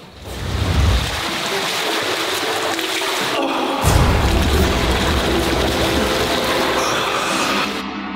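Water splashing in a swimming pool as a swimmer thrashes at the surface, over background music with low booms. The splashing cuts off just before the end.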